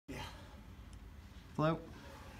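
A short spoken word or vocal sound, loud and brief, about one and a half seconds in, with a clipped scrap of voice at the very start. Quiet room tone fills the rest.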